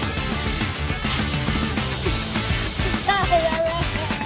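Upbeat rock background music. About a second in, a can of Silly String sprays with a hiss for a couple of seconds and cuts off, and near the end a child lets out a high, drawn-out squeal.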